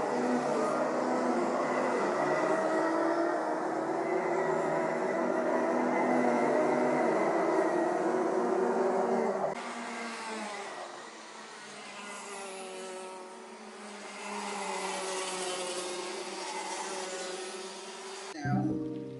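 Several two-stroke racing kart engines running at high revs, their pitches wavering and overlapping. About nine seconds in the sound drops suddenly to fewer, quieter engines whose pitch rises and falls as they pass.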